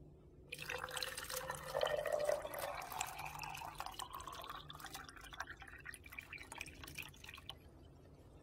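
Liquid poured in a stream into a clear plastic cup in the top of a plastic-bottle planter, splashing and gurgling as it fills. The pitch of the filling rises as the cup fills up, and the pour stops about seven and a half seconds in.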